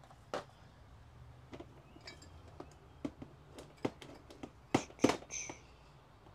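Mugs and other collectibles being handled in plastic storage tubs: scattered light clicks and knocks of ceramic, glass and plastic, getting louder and more frequent in the second half, with one brief glassy clink ringing out near the end.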